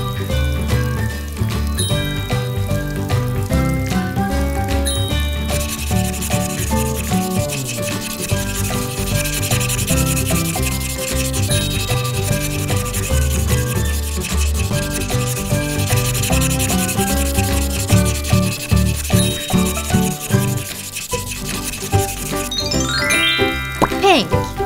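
Felt-tip marker rubbing and scratching across paper as lines are drawn, strongest from about five seconds in until shortly before the end, over background music with a melody and a bass line. Near the end a rising whistle-like glide is heard.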